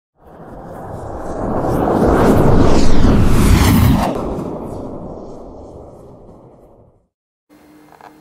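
Logo-intro sound effect: a whooshing rumble that swells for about three seconds, peaks, then fades away by about seven seconds in.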